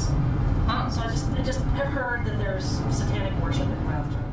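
Steady road and engine rumble inside the cabin of a moving car, with a woman talking over it.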